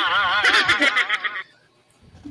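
A person laughing: one high-pitched, warbling laugh that lasts about a second and a half, then stops.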